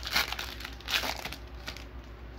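Foil trading-card pack wrapper crinkling as it is pulled open by hand, in two sharp bursts, one just after the start and one about a second in, with fainter rustles after.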